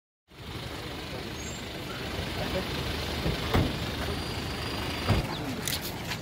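A vehicle engine running steadily close by, mixed with people talking in the background, with two short knocks about three and a half and five seconds in.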